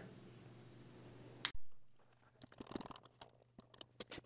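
Faint hum, then from about a second and a half in a click and a scatter of quiet clicks and creaks from a hand-worked crimping tool being squeezed at a bench.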